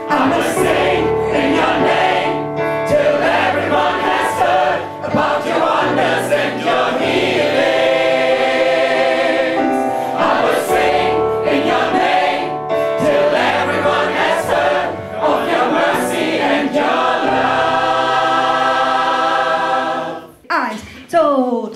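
A mixed choir of men and women singing a gospel song in full voice, with sustained notes, accompanied by an electric stage piano.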